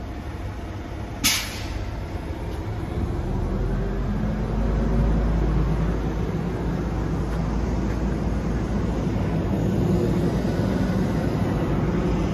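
A heavy diesel truck engine running nearby, a low steady rumble that grows louder from about three seconds in. A short sharp hiss sounds about a second in.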